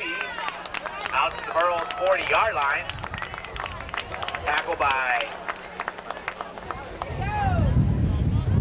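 People shouting and calling out indistinctly beside a football field, high-pitched voices rising and falling, with scattered sharp clicks. Wind begins buffeting the microphone with a low rumble about seven seconds in.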